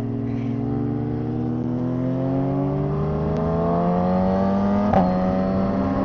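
A vehicle engine running steadily under light load, its pitch rising slowly and evenly as it gradually gathers speed. A short click comes about five seconds in.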